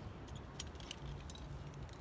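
Light metallic clicks and jingles of harness lanyard clips and carabiners being handled, a few scattered ticks over about two seconds.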